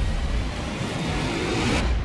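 Film sound effects of a whale surging through heavy sea alongside a ship: a loud rushing roar of churning water over a deep rumble, cut off abruptly just before the end.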